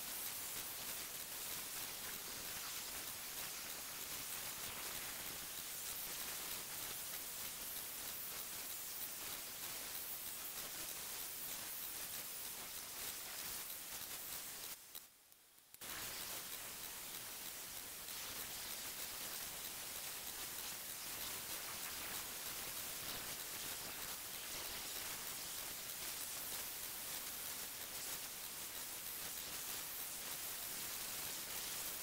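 Random orbital sander running steadily on an epoxy-and-wood table top, a faint, even, hissy whir. The sound breaks off for about a second halfway through, then carries on.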